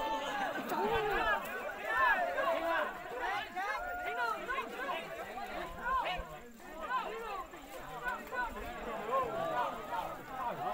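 Several people's voices talking over one another, an overlapping chatter of onlookers with no single clear speaker.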